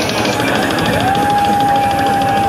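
Heavy metal band playing live and loud, distorted guitars and drums in a dense wall of sound. About a second in, a single high guitar note slides up and is held steady.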